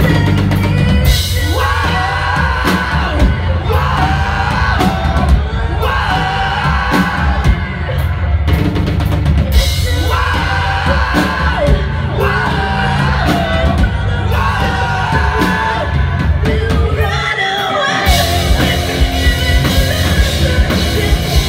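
Live rock band playing a song, heard from the crowd: a drum kit, guitars and bass under a woman's singing voice. Near the end the low end drops out for about a second before the full band comes back in.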